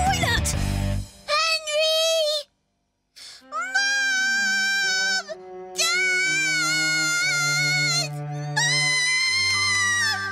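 A high child's voice singing long, wavering, wordless notes over soft held accompaniment notes. A short noisy burst comes at the start, and the singing breaks off in a brief silence about two and a half seconds in.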